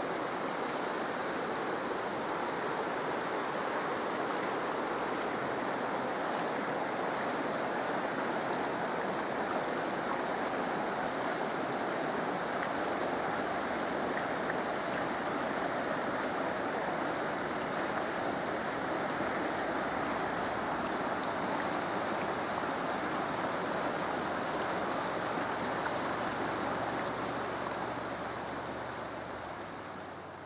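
A shallow rocky river rushing over boulders: a steady roar of running water that fades out near the end.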